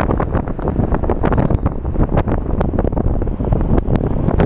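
Wind buffeting the camera's microphone: a loud, steady low rumble broken by frequent short crackles.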